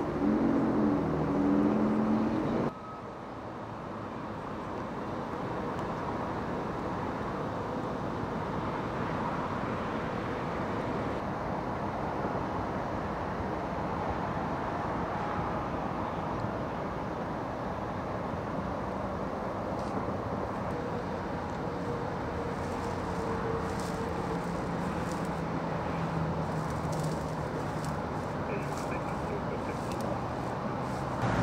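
Steady roadway traffic noise: an even hiss of passing vehicles with a faint engine hum. A louder opening stretch cuts off suddenly a little under three seconds in, and the noise then builds back gradually and holds steady.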